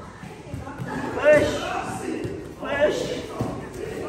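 Two short calls from young children, high-pitched and without clear words, about a second in and again near three seconds, with light thuds in between.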